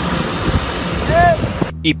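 Fire engine's diesel engine running, with wind buffeting the microphone in a steady rushing noise that cuts off suddenly near the end.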